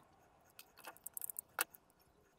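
Metal keyring clinking and jingling against a small 3D-printed plastic case as it is fitted on by hand, in a series of sharp clicks, with the loudest click about one and a half seconds in.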